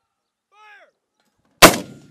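A 60 mm light mortar fires once: a single sharp, loud report about a second and a half in that dies away quickly.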